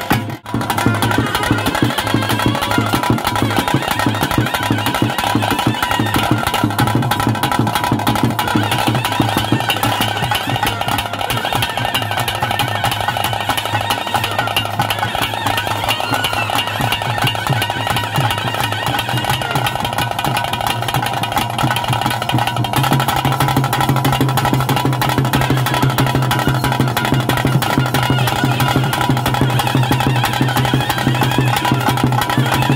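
Traditional Tulu kola ritual ensemble: stick-beaten drums keep up fast, steady strokes while a double-reed pipe of the shehnai type plays a sustained melody over them.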